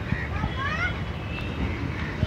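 Street background: a steady low traffic rumble with indistinct voices, and a few quick rising high squeaks about half a second in.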